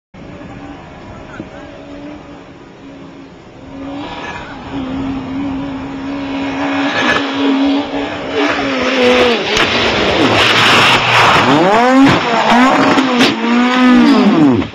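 Fiat Seicento rally car engine approaching and growing louder, held at a steady pitch at first. It then revs hard, the pitch swinging sharply up and down over the last few seconds as the car goes off the road and crashes into a field.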